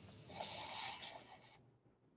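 A faint breath into a close microphone, swelling just after the start and fading out within about a second and a half.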